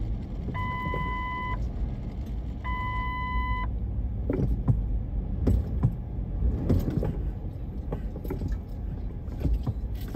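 Busy city-street traffic rumbling steadily. An electronic beeper sounds twice, one-second beeps about two seconds apart, and stops about four seconds in. Scattered short clicks and knocks follow.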